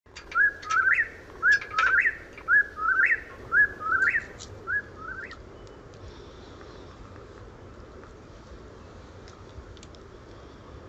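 Whip-poor-will calling: a loud whistled call, a short note then a rising one, repeated five times about once a second, stopping about halfway through.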